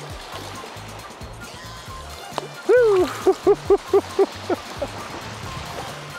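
A man gives a loud rising-and-falling whoop about two and a half seconds in, then laughs in about six short bursts that fade out. Background music with a steady bass line runs under it, with small waves washing on the shore.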